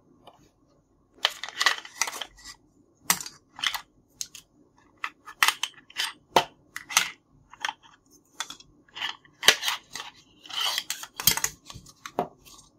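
Hard plastic toy kitchen pieces (play food, a toy spatula, a lunchbox tray) clicking and clattering against each other and the plastic case as they are handled, in irregular bursts after a short quiet opening.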